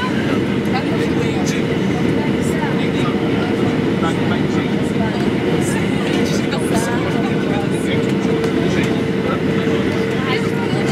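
Cabin noise inside a Boeing 737-800 on descent: a loud, steady roar of CFM56 engines and airflow over the fuselage, with a steady hum running through it.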